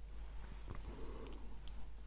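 A dog breathing softly close to the microphone, its tongue hanging out as if it is hot.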